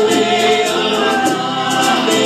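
Live Hawaiian song: several voices singing together over strummed string accompaniment in a steady, even rhythm.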